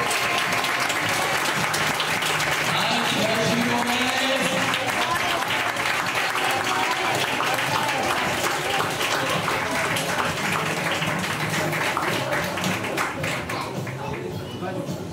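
Audience applauding steadily, with voices and some music mixed in; the clapping thins out near the end.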